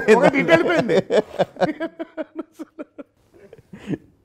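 A man laughing heartily in short, rhythmic bursts that fade out over about three seconds.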